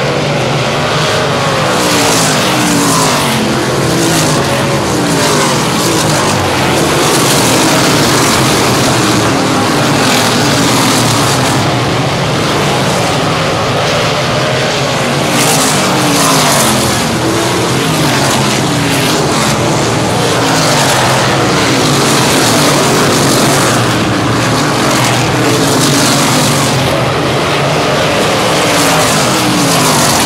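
Several winged sprint cars' V8 racing engines running hard on a paved oval. Their engine notes fall in pitch again and again as the cars sweep past and through the turns.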